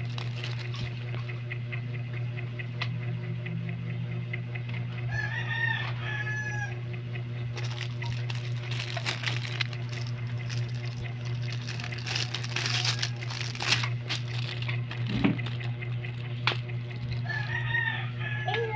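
Plastic shrink-wrap crinkling as a wrapped Blu-ray case is handled, over a steady low hum. A rooster crows twice in the background, about five seconds in and again near the end.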